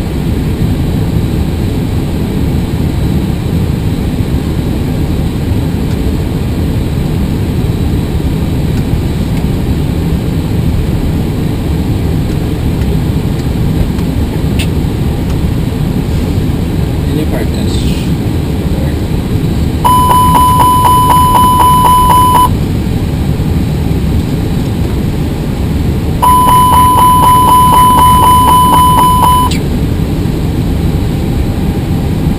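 Airbus cockpit fire-warning alarm, a rapidly repeating chime, sounds twice for about three seconds each time, set off by a test of the fire-detection system. A steady low rush of cockpit ambient noise runs underneath.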